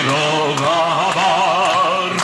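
A voice singing a long held note with a steady wavering vibrato, part of the music track.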